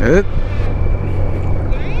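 Touring motorcycle's engine running steadily at riding speed, with wind and road noise, heard from the rider's seat.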